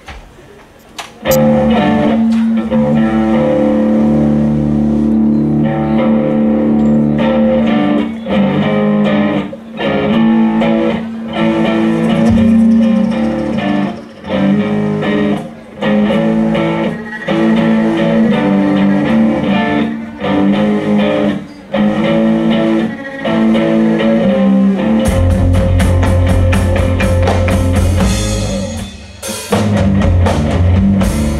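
Live band starting a dirty blues song: an electric guitar riff comes in about a second in, played in phrases broken by short regular stops, and a heavy low end with drums joins near the end.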